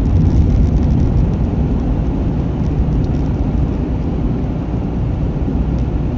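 Steady low rumble of a car's engine and tyres, heard from inside the cabin, as it drives on winter tyres over a snow-packed highway.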